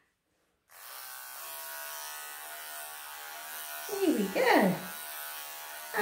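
Cordless electric pet clippers switched on about a second in, then running with a steady buzzing hum.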